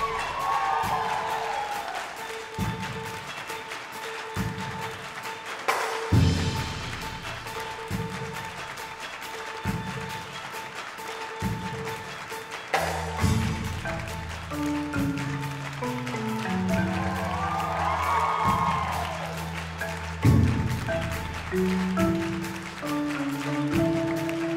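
Live percussion ensemble music: deep drum strokes about every second and three-quarters under a held high tone, with a rising-and-falling gliding tone twice. From about halfway, a line of low pitched mallet notes on marimbas joins in.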